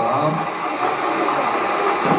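A recorded rain sound effect played over loudspeakers in a hall: a steady, even hiss.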